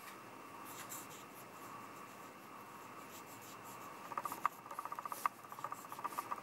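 Fountain pen nib scratching across paper while writing in cursive. It is faint at first, then from about four seconds in comes in quick clusters of short, distinct scratchy strokes.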